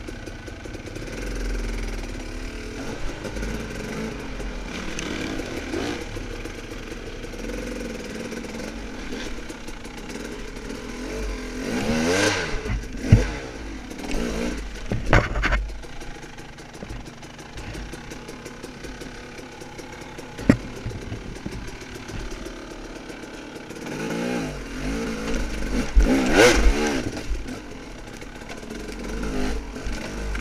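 Dirt bike engine run at low speed on the trail, with the throttle opened in short rising bursts a few times, and a few sharp knocks from the bike striking rocks.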